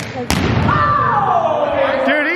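Two sharp smacks of a volleyball being hit near the start, echoing through a gym. Then a long, high cry that falls steadily in pitch, over players' chatter.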